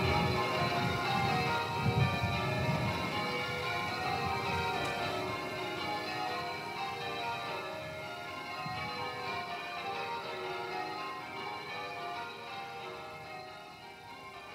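Church bells ringing changes, many overlapping ringing tones that slowly fade away, with a low rumble underneath in the first few seconds.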